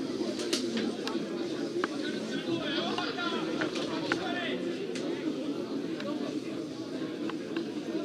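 Open-air ambience of a football pitch: distant voices of players and spectators calling out over a steady low murmur, with a few sharp knocks.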